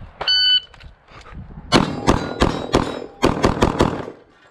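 Electronic shot-timer beep, brief and high, then about a second and a half later a string of rapid handgun shots, roughly ten, fired in two quick groups with a short pause between them.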